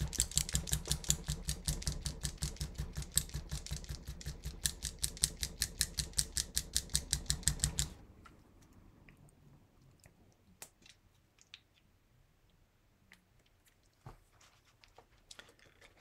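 White acrylic paint pen being shaken, its mixing ball rattling inside the barrel in a fast, even run of clicks, about six a second, to mix the paint before use. The rattling stops about halfway through, leaving only a few faint clicks.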